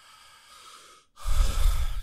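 A man's breath close to a microphone: a soft inhale, then about a second in a heavy exhale or sigh that blows onto the mic and comes through as a loud, low rumble.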